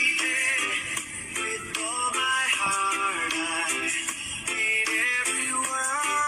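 Background music: a song with a singing voice over instrumental backing.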